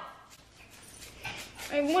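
A short lull with faint room sounds, then a girl starts speaking in a whining voice near the end.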